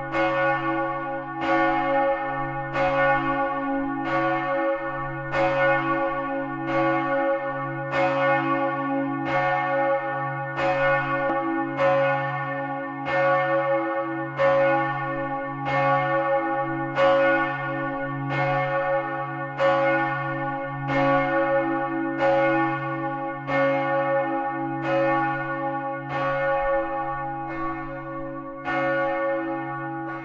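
Several large bronze church bells of the tower of St. Johannes in Stift Haug ringing together. Their strikes overlap in an uneven stream of a little more than one a second, over a steady, deep humming tone.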